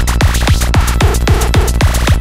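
Hitech psytrance music: a fast, relentless kick-and-bass pulse, several hits a second, under glitchy, scratchy synth effects, with a short stuttering synth figure in the middle.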